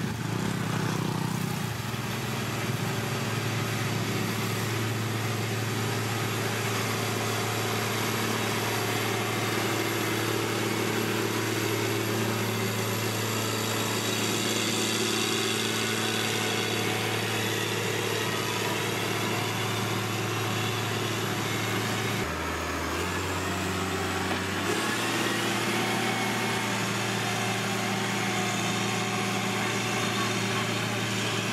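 Motor grader's diesel engine running steadily as the grader works. For a couple of seconds about three-quarters of the way through, its note shifts lower, then returns.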